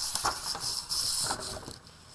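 Sheet of white drawing paper being flipped over and slid into place on a clear plastic texture plate: paper rustling with a few soft scrapes and taps, dying down near the end.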